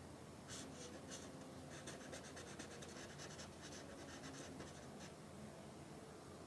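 Felt-tip permanent marker scribbling on paper: faint, quick back-and-forth strokes, several a second, shading in a region of a drawing. The strokes start about half a second in and die away near the end.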